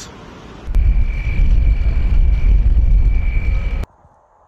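Strong blizzard wind buffeting the microphone: a heavy low rumble that sets in under a second in, with a steady high whistling tone over it, then cuts off abruptly near the end.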